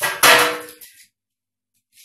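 A metal baking tray clangs once as it is handled and rings briefly, fading within about a second.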